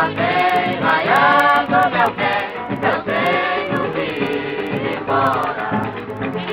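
Women's voices singing together in a choir-like group over musical accompaniment, with held notes that slide between pitches.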